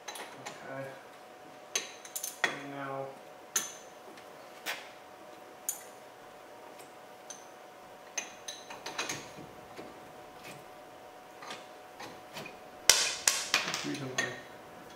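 Steel screwdriver clinking and tapping against a disc-brake caliper as it is worked loose for prying off: scattered sharp metallic clicks, some briefly ringing, with a louder cluster of clanks near the end.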